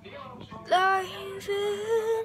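A child singing long held notes. The voice swoops up into a sustained note about two-thirds of a second in, then holds a slightly higher note near the end.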